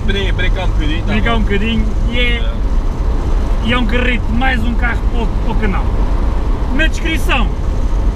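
Steady low engine and road rumble inside a Honda S2000's cabin while it drives, heard under talking.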